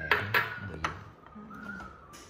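Ceramic tableware clinking: about three sharp, short clinks in the first second, each with a brief ring, as dishes and bowls are handled on a hard countertop.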